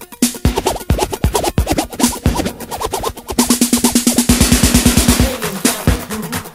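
Instrumental break of an electro hip-hop club mix: a drum-machine beat with electronic sounds, turning into a fast roll of drum hits about two-thirds of the way in.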